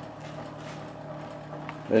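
Bedini SSG energiser running, giving a steady hum with overtones as its bicycle-rim wheel of neodymium magnets spins past the drive coil.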